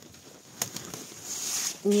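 Soft rustle of eggplant leaves brushing against the phone as it is pushed in among the plants, with a single click about half a second in. A woman's voice starts near the end.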